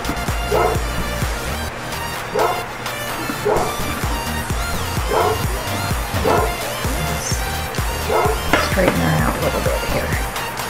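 Background music with a steady beat, over which a basset hound yips in short cries about six times, a second or two apart.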